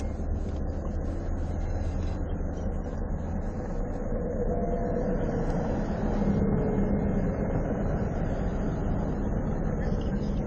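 Steady low rumble of a vehicle heard from inside a car's cabin, with faint indistinct voices under it.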